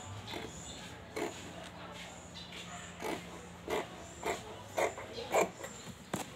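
Scissors cutting fabric in a series of short, irregular snips, the last few louder, over a low steady hum.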